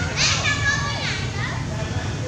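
Macaque squealing: high, wavering cries, loudest in the first second and then trailing off into fainter ones.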